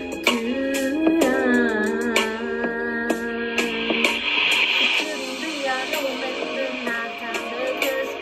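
Music: a woman singing a slow pop melody over a backing track, her voice gliding between held notes, with percussive clicks. The singing breaks off for a moment about four seconds in.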